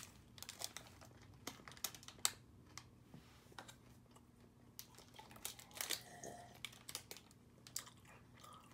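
Snack bar wrapper crinkling in the hands as it is opened, in faint scattered crackles, followed by quieter clicks and crunches of chewing the crunchy grain bar.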